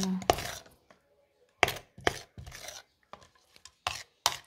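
A spoon stirring and scraping chopped onions mixed with honey in a plastic jar, in several short, irregular strokes.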